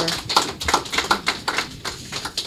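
A quick, irregular series of sharp clicks and taps, several a second.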